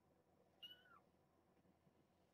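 A very young kitten's single short, high-pitched mew, about half a second in, dipping slightly in pitch at its end.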